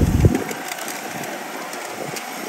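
Outdoor crowd hubbub of many people walking and talking, with no single voice standing out. A brief low rumble comes at the very start.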